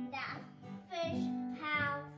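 Acoustic guitar strummed by a child, with held chords ringing, and a child's voice singing over it.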